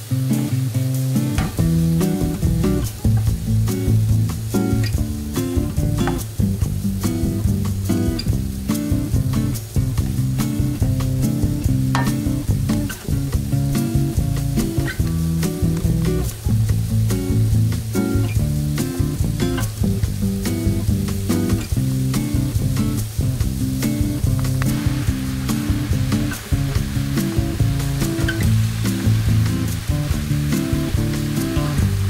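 Acoustic guitar background music with a steady beat, over vegetables sizzling and crackling in a frying pan. About four-fifths of the way in, a louder frying hiss starts as chopped kale is stirred in the pan.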